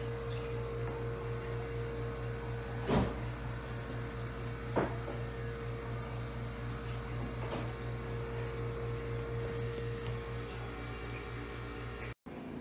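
Steady electrical hum of an appliance running in a small room. Two sharp knocks of things being handled break it, the loudest about three seconds in and another near five seconds.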